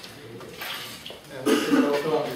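A person coughing: one short, loud cough about one and a half seconds in, in a lecture hall.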